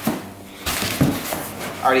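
Cardboard box flaps rustling and scraping as the boxed aluminium heat exchanger inside is handled, with a sharp knock about a second in.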